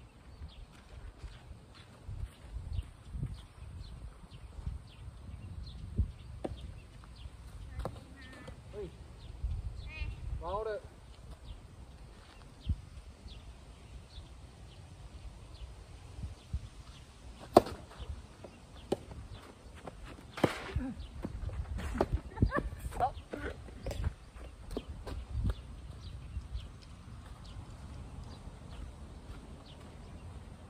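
Soft tennis rally on a dirt court: sharp pops of the rubber ball off the rackets, the loudest a little past the middle, with footsteps scuffing the dirt and a low rumble of wind on the microphone.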